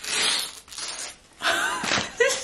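Brown kraft wrapping paper being torn and crinkled off a hardcover book, a noisy rip strongest in the first half second. A short vocal exclamation follows near the end.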